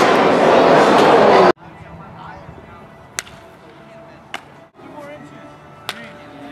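Loud, steady ballpark noise that cuts off abruptly after about a second and a half. Then, over quiet background voices, three sharp cracks of bats hitting balls in batting practice, spaced about a second or more apart.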